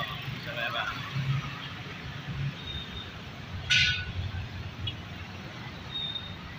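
Steady low rumble of road traffic, motorcycles and cars passing on a busy road, with one short, sharp hiss about four seconds in.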